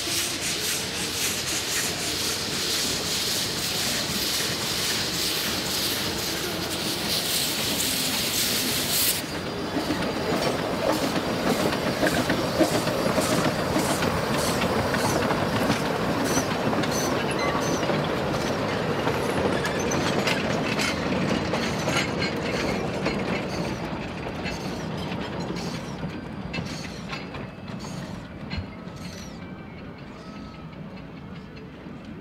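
Amemiya No. 21 narrow-gauge steam locomotive approaching, with a loud steady hiss of steam from its open cylinder drain cocks. The hiss stops abruptly about nine seconds in. The engine and its carriages then run past with clicking and rattling wheels over the rail joints, fading toward the end.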